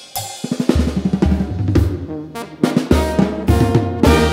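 A live banda's drums opening a song, with snare rolls and fills over bass-drum hits. Low sustained bass notes run underneath.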